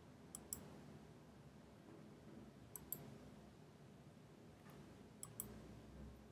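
Near silence broken by three faint pairs of computer mouse clicks, the two clicks in each pair a fraction of a second apart, spaced about two and a half seconds apart.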